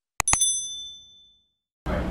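Subscribe-button animation sound effect: a quick double click, then a bright bell ding that rings out and fades over about a second. Background noise from the conversation's setting cuts back in near the end.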